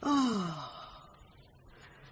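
A person's long, breathy 'Oh', falling steadily in pitch and fading within about a second, like a sigh of dismay on reading a horrible anonymous letter.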